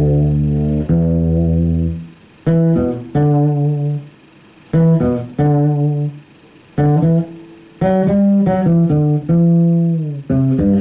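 Solo electric bass playing a slow improvised melody: held notes in short phrases, with brief pauses between them.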